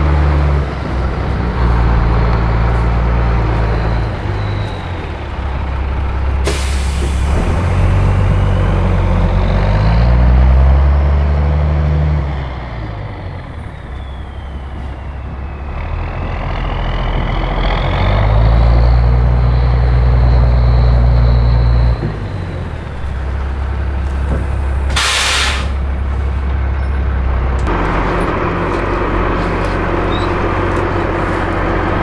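Diesel container-delivery truck's engine running and changing pitch as it drives and maneuvers, with two short air-brake hisses, one about six seconds in and one about twenty-five seconds in.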